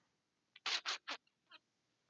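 Three or four short, soft breathy sounds from a man's mouth, close to a headset microphone, coming quickly one after another about halfway through.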